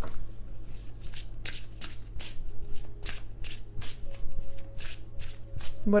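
A tarot deck being shuffled by hand: a run of short card strokes, about two or three a second.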